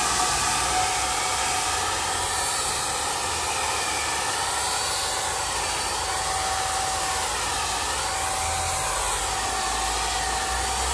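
Parkside PFS 450 B1 HVLP paint sprayer running steadily while spraying thinned paint: a loud, even whirring hiss from its 450 W blower motor. The hiss wavers gently in tone as the gun sweeps back and forth.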